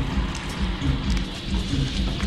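Steady spray of running water, like a shower, hissing evenly, with a deep rumble underneath.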